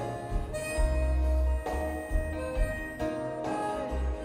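A live rock band playing an instrumental break between verses: guitars and bass under a lead line that holds a long note in the middle.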